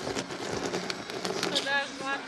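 Voices calling out over outdoor background noise, with a few short knocks in the first second and a half and a raised voice near the end.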